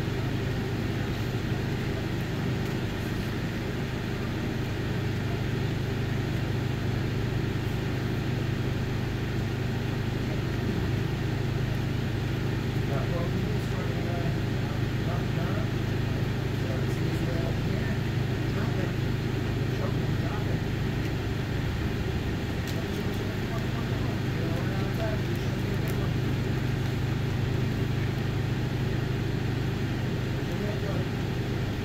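A steady low hum that does not change, with faint voices in the background.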